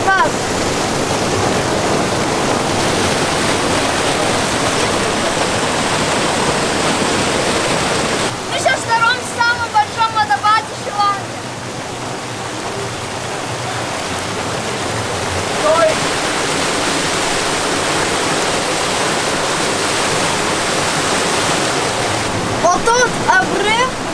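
Steady rush of a small waterfall cascading over rock into a pool, with children's voices calling out in short bursts about nine seconds in.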